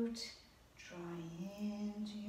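A woman humming a slow tune in long held notes: the first note ends just after the start, there is a short breath, and a new phrase begins about a second in, stepping up in pitch and held.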